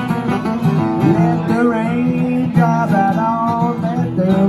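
Two acoustic guitars playing a country-blues tune together. A higher melody line slides and bends its notes over steady low notes and chords.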